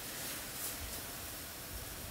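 Faint steady hiss of a pot of washing-soda solution at the boil.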